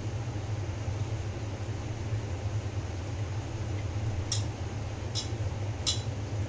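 Steady low mechanical hum, like a fan or motor running, with a few brief light clicks in the second half.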